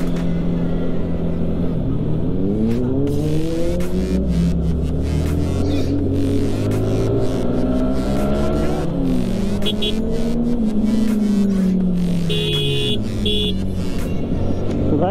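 Sport motorcycle engine pulling away and riding, its pitch climbing through the gears and dropping back several times. Short high beeps come in briefly near the end.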